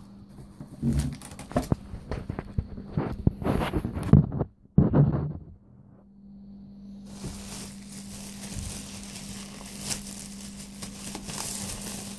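Handling noise for the first five seconds or so: irregular knocks and clicks as the phone is moved and set down against the bedding. After that, a thin plastic trash bag crinkles and rustles softly over a steady low hum.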